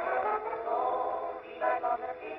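Music with long held notes, played from a disc on a horn gramophone.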